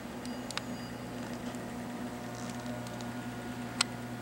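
Steady low hum of running electronic equipment, with a few sharp clicks, the loudest near the end.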